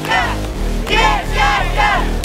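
A crowd of young people chanting and cheering in a rhythmic, repeated shout, over electronic background music with a steady bass.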